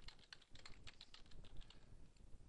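Faint typing on a computer keyboard: a quick run of keystroke clicks as a word is typed.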